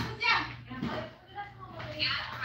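Children's voices and household chatter, loudest in the first half second and then fainter, over a steady low hum.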